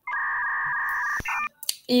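A steady electronic tone lasting about a second, followed by a shorter, separate tone and a single click.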